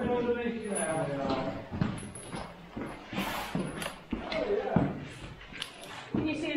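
Scattered knocks and scrapes of a caver's boots and hands on rock while climbing a muddy flowstone slope on a fixed chain, with a muffled voice near the start.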